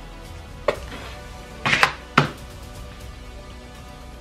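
A mayonnaise squeeze bottle and a spoon handled on a tabletop of paper plates: a few short sharp clicks and knocks, one under a second in and a quick cluster around two seconds, over soft background music.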